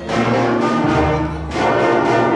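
School concert band playing held chords, brass to the fore with trombones, trumpets and a sousaphone. The sound dips briefly about one and a half seconds in as the chord changes.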